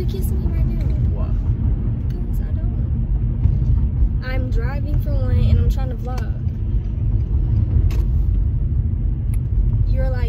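Steady low rumble of a car driving, heard inside the cabin, with a person's voice briefly in the middle.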